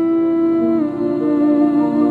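New-age instrumental music: long sustained notes held as a chord that steps down to a lower pitch about a second in.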